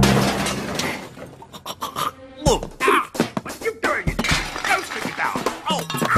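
Glass shattering at the start, the crash dying away over about a second, followed by cartoon music and sound effects with gliding notes and short knocks.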